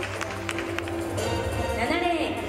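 Music over a stadium public-address system, with a voice on the loudspeakers starting near the end.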